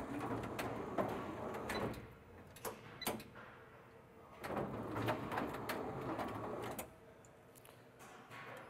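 Motorised vertical tool carousel of an electronic toolbox running in two stretches, one in the first two seconds and another from about the middle to near the end, as its tool trays rotate past the open hatch. A few sharp clicks fall in the pause between the two runs.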